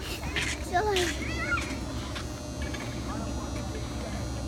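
Children's brief high-pitched cries and calls during outdoor play: a couple of short wavering cries about a second in and fainter ones near the end, over a steady low rumble.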